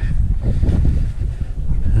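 Wind buffeting the microphone: a loud, unsteady low rumble.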